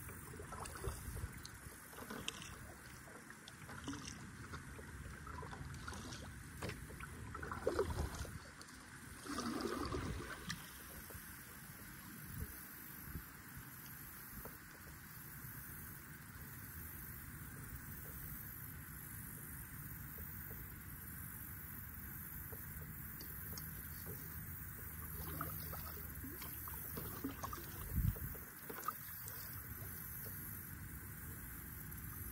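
Water lapping quietly against a plastic kayak hull as it glides on calm water, with a few louder splashes and bumps about eight seconds in, around ten seconds in, and near the end.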